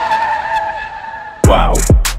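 Car tyre screech, a steady high squeal lasting about a second and a half and slowly fading. Then a hip-hop beat drops in with deep booming bass kicks and sharp hi-hat ticks.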